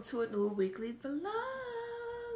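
A woman's voice humming wordlessly in a sing-song way: a few short notes, then about a second in one long note that rises and is held level.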